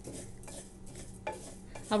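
Wooden spoon stirring whole black urad dal as it roasts in a cast iron skillet: a soft scraping rustle of the lentils moving against the pan.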